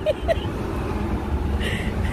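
Steady low road and engine rumble inside a moving car's cabin, with a few short vocal sounds near the start.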